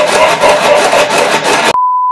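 A loud, harsh, rapidly fluttering noise cuts off suddenly near the end. It gives way to a steady high test-tone beep, a single pitch near 1 kHz.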